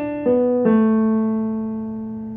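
Electronic keyboard playing single notes one after another, each lower than the last: a note already sounding, then two more about a quarter and two-thirds of a second in, the last one held and slowly fading. These are the notes of a sung melody being laid out before singing.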